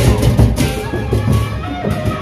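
Sasak gendang beleq ensemble playing live: large barrel drums beaten in a dense, continuous rhythm with clashing cymbals.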